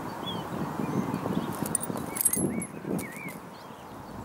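Steady outdoor rushing noise with small birds chirping a few times, and a cluster of faint sharp clicks and soft knocks around two seconds in.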